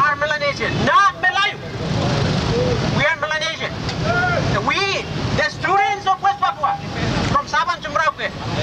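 A man's voice amplified through a handheld megaphone, in several short phrases separated by pauses, over a steady low background rumble.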